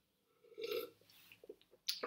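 A short throat or mouth sound from a man, under a second long, followed by a few faint clicks near the end.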